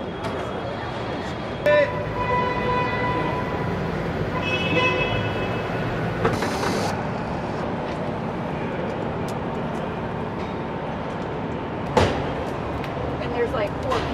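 Car assembly plant floor: a steady machinery din, with horn-like beeping tones between about 2 and 5 seconds in, a short hiss about 6 seconds in, and a sharp clank about 12 seconds in.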